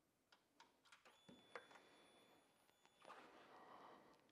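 Near silence: a few faint clicks, and a thin high whine for about two seconds in the middle.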